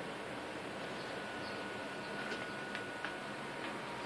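Steady hiss of quiet room noise, with a few faint clicks in the second half.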